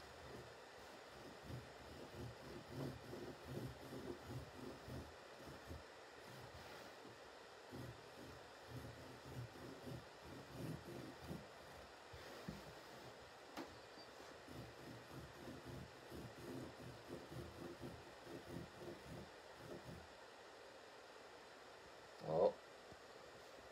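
Faint scratching of a felt-tip marker drawing letters on coarse rug-hooking backing stretched over a wooden table, in short irregular strokes over quiet room hiss.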